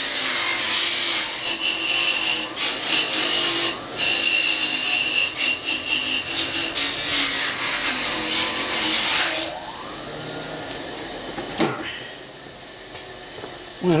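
Powered soft wire wheel running while the corroded aluminium body of an outboard carburetor is held against it to scrub off corrosion. About nine and a half seconds in it is switched off and winds down with a falling pitch, and a single knock follows a couple of seconds later.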